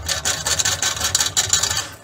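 Rapid, irregular scraping and rubbing from fingers working the float of a water level sensor against its shaft in a stainless steel tank.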